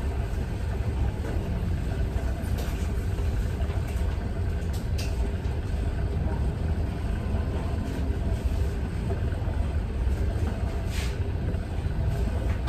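Salon hood hair steamer running with a steady low hum.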